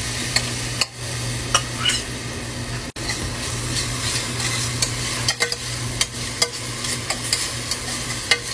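Metal spoon stirring green seasoning paste in hot oil in a stainless steel pot, with frequent light ticks and scrapes of the spoon on the pot over a steady sizzle.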